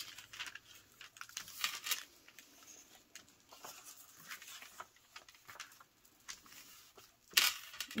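Paper being handled on a cutting mat: faint, scattered rustles and light taps as sheets and an envelope are moved and picked up, with one louder brushing rustle near the end.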